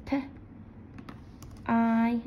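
A few scattered keystrokes on a computer keyboard as a short word is typed.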